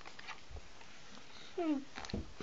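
Quiet room with a soft low bump about half a second in, then a child's short hummed "hmm" that falls in pitch near the end.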